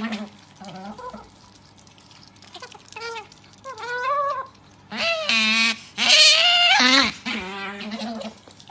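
Pet otter giving a run of repeated high-pitched calls with wavering pitch, a few shorter ones first, then longer and louder ones in the second half.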